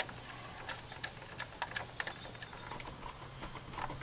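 Faint, irregular small clicks and ticks of hand work on an electrical outlet: a screwdriver and wires being handled at a receptacle in a plastic electrical box. A steady low hum runs underneath.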